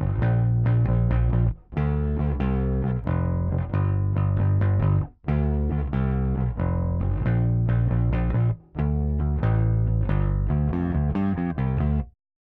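Bass guitar loop: a phrase of plucked notes repeating about every three and a half seconds, with a short gap between repeats, stopping suddenly at the end. The loop has been sent out through D/A converters and recorded back through A/D converters clocked first from one clock source, then from the other.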